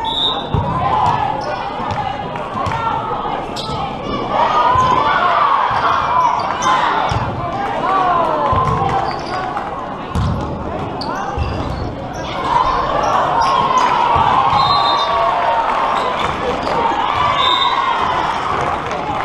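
Volleyball match sounds in a large, echoing sports hall: scattered dull thuds of the ball being hit and bouncing on the court, under many players' and spectators' voices calling and cheering.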